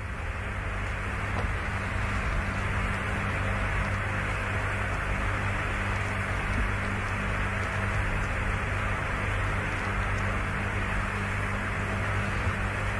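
Steady radio hiss with a low hum: the open air-to-ground voice channel of the Apollo mission audio between transmissions.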